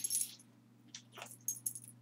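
A dog's metal collar tags jingling lightly, in one short spell at the start and another in the second half, as the dog moves.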